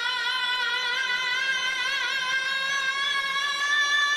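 A voice singing one long high note, wavering in pitch at first and then steady.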